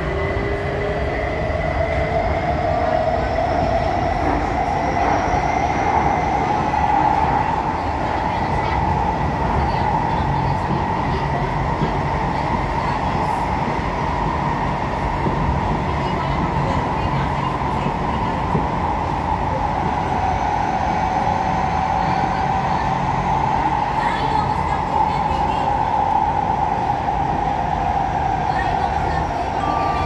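Inside the cabin of an SMRT Kawasaki-Sifang C151B metro train under way: a traction motor whine rises in pitch over the first few seconds as the train accelerates, then holds steady over a continuous rumble of the wheels on the rails.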